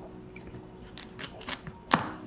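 A few faint clicks and one sharper tap near the end as a chef's knife is set and pressed into the center of a raw butternut squash on a wooden cutting board.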